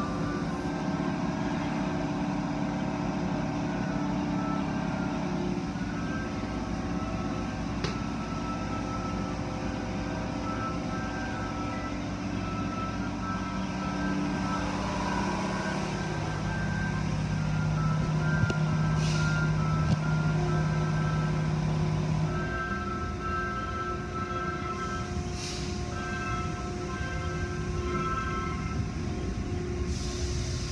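Automatic car wash equipment running steadily, heard through the glass: a wash of spraying water and motor noise with a droning hum of several tones that shifts pitch a couple of times.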